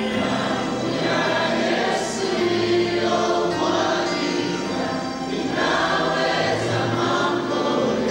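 Church worship team singing gospel music together as a choir, with instrumental accompaniment and recurring cymbal hits.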